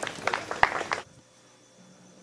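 A few sharp clicks and knocks in the first second, the loudest about halfway through, then the sound drops abruptly to a faint steady background.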